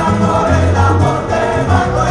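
Live salsa played by a band with a symphony orchestra, with a bass line pulsing under sung voices.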